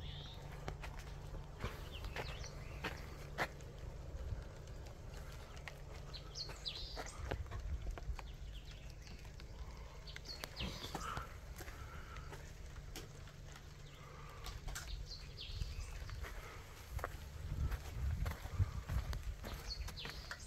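Quiet outdoor ambience: a low steady rumble, faint footsteps and phone-handling clicks, and a few short animal calls now and then.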